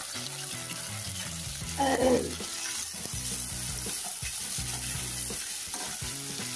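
Oil sizzling steadily in a stainless-steel karahi as sliced onion and fresh herbs fry, with a spatula stirring through them. A brief voice sounds about two seconds in.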